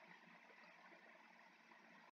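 Near silence: faint steady hiss of room tone after the narration ends.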